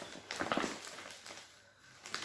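Rustling of cloth and its plastic packing as a folded embroidered suit fabric is handled and opened out, a few scraping rustles in the first second that die away.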